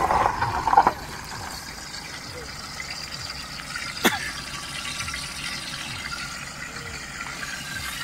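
An SUV driving past close by, its noise fading out within the first second, then a steady background hiss with a single sharp click about four seconds in.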